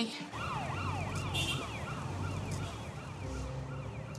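Police car siren in a fast yelp, its pitch rising and falling about three times a second and fading away after a couple of seconds, over the low rumble of a moving car.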